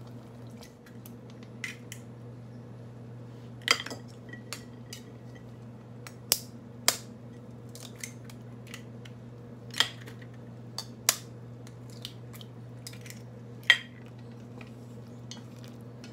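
Sharp knocks and clinks of chopsticks, a spoon and eggshells against a stainless steel stockpot and dishes while eggs are cracked and shrimp added, about seven loud strikes spread out, the loudest near the end. A steady low hum runs underneath.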